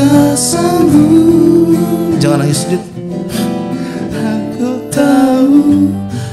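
Acoustic guitars strummed as accompaniment to men singing an Indonesian song into close microphones, a dip in loudness about three seconds in.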